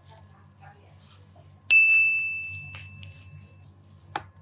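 A single bright bell-like ding about halfway through, one clear ringing tone that fades away over about two seconds.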